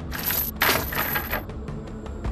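A bright, jingling sound effect in two bursts, a short one and then a longer one, like coins or small metal pieces shaken together.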